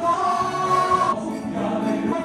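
Live gospel singing with electronic keyboard accompaniment, with a long held sung note through most of the first second.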